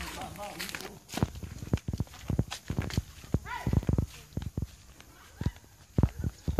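Footsteps of a person walking across grass and bare earth, about two steps a second, irregular.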